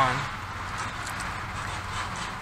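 Steady low hum and hiss of a car's cabin, with a few faint clicks.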